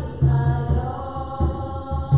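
Voices singing a hymn in long held notes over a low, pulsing beat.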